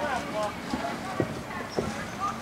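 Sharp knocks in a steady walking rhythm, about one every half second, with faint voices in the background.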